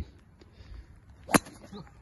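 A single sharp crack of a golf club striking the ball on a tee shot, a little over a second in.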